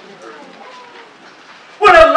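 A short pause in a man's speech through a microphone, with only faint room noise, before he starts speaking again near the end.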